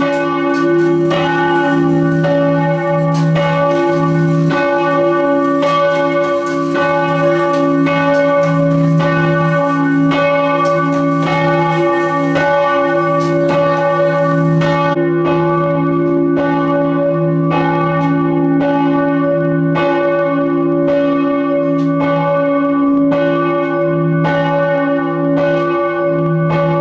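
Church tower bell being rung, struck over and over at a steady pace, its deep tones ringing on between strikes.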